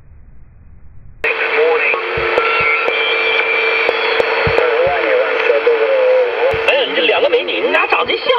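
Homebrew direct conversion phasing receiver switching on abruptly about a second in through its small loudspeaker. It brings shortwave band noise, steady heterodyne whistles and wavering, garbled single-sideband voice.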